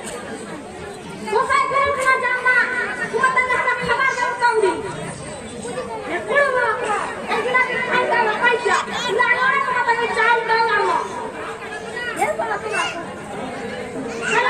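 Speech only: actors' spoken dialogue, with voices trading back and forth.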